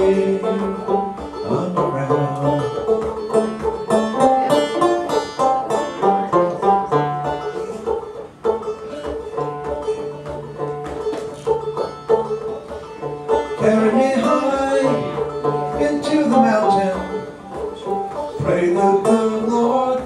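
Banjo picked in a steady stream of quick plucked notes and chords, an instrumental passage with no singing over it.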